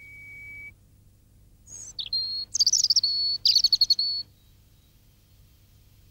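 Birds chirping and trilling, high-pitched, for about two and a half seconds starting a little under two seconds in, with quick warbling runs and a held whistled note. A thin steady high tone fades out within the first second.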